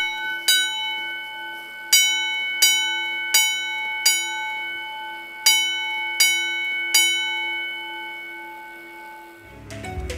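Edwards 323D 10-inch single-stroke fire alarm bell struck in coded rounds by a Notifier coded pull station. Each stroke rings out and decays: one stroke, a pause, a group of four about 0.7 s apart, a pause, then a group of three. The last ring fades away before music comes in near the end.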